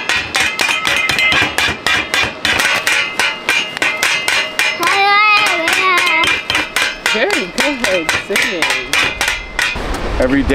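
Wooden spoons drumming fast on a metal cooking pot and lid, about four or five strikes a second, each with a bright metallic ring.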